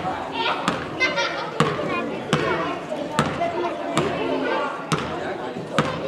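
A basketball dribbled on a hardwood gym floor: about seven sharp bounces at a steady pace, a little under a second apart, over background voices.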